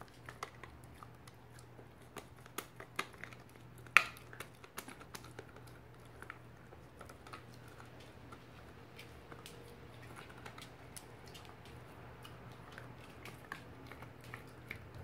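A Shiba Inu gnawing a hand-held Petstages antler-style chew toy: irregular clicks and scrapes of teeth on the hard toy, busiest in the first few seconds, with one sharp loud click about four seconds in. A faint low hum runs underneath.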